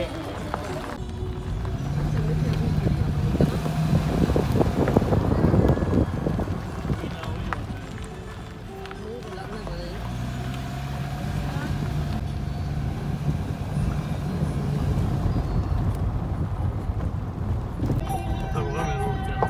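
Car driving on a rough road, heard from inside the cabin: a continuous low road and engine rumble, with knocks and rattles loudest around five seconds in.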